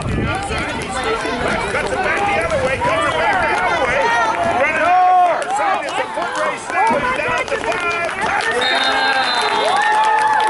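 Sideline spectators shouting and cheering over one another while a ball carrier runs a play in a youth football game: many excited voices at once.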